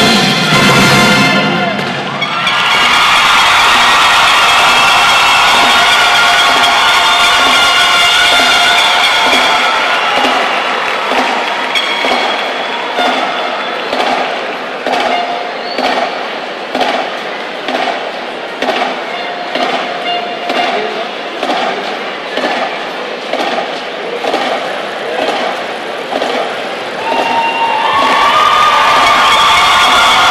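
A school marching band's music gives way, a couple of seconds in, to a large crowd cheering in an arena. A steady beat of about one stroke a second then runs under the crowd noise as the band marches off, and pitched sound comes back near the end.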